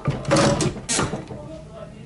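Heat press being pulled down and clamped shut over a jersey: a loud clatter, then a sharp clunk about a second in.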